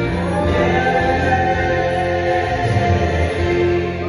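Song with a man singing long held notes over band accompaniment.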